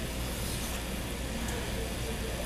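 Steady room noise with a low hum and faint background voices; no distinct kitchen sounds stand out.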